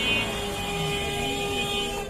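A high-pitched electronic buzzer tone held for about two seconds and cutting off just before the end, with a lower steady tone under it, over busy street-market noise.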